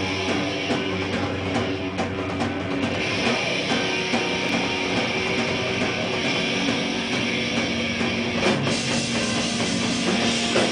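A heavy metal band playing live, with electric guitars and a drum kit, recorded from within the crowd.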